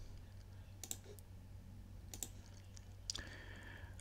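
Faint computer mouse clicks, a few single and paired clicks spread out about a second apart, over a low steady hum.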